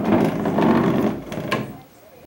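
Legs of a small IKEA side table scraping and juddering across a wooden floor as it is pushed along, with a sharp knock about a second and a half in. The scraping fades out just before the end.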